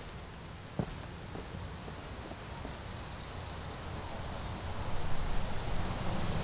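Footsteps on grass and loose dirt, a person walking up and coming closer, growing louder in the second half, with a single sharp tap about a second in. Rapid runs of high chirps come in around the middle and again near the end.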